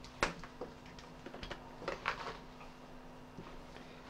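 A few light clicks and taps from small electronic parts, wires and a multimeter being handled on a carpet, over a faint steady hum.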